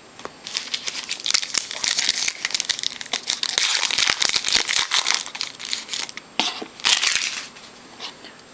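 Foil trading-card pack wrapper crinkling and tearing as it is opened and handled, a dense run of crackles that is loudest near the end.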